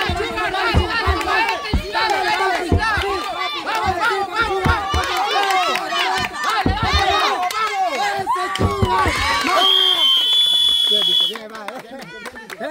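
A group of people shouting and cheering excitedly over one another, with scattered low thumps. About nine and a half seconds in, a referee's whistle gives one long steady blast, and the shouting drops away when it stops.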